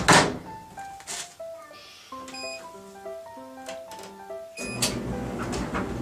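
Front-loading dryer door pushed shut with a loud thunk, over background music with a simple stepping melody. A couple of short high beeps sound in the middle, and near the end a steady low noise comes in.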